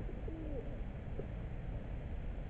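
A bird giving a few short, low-pitched calls that slide in pitch, over a steady low rumble.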